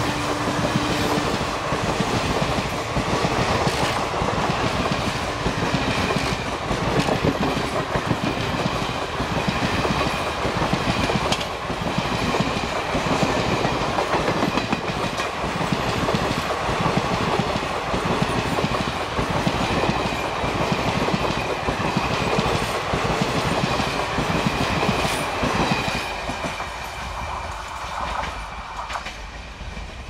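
Passenger coaches of an express train rolling past close by, their wheels clattering rhythmically over the rail joints. The sound fades away near the end as the last coach passes.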